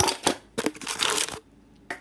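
Plastic packaging crinkling and crunching as a gel ice pack and a frozen food pouch are handled, in two dense bursts, followed by a short click near the end.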